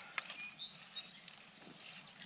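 Small birds chirping in short, high calls, over faint clicks and a low rustle from a wheeled push seeder rolling through loose dirt.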